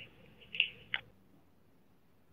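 Two-way radio channel at the end of a dispatch transmission: a brief scratchy burst about half a second in, then a sharp click just before one second as the transmitter unkeys.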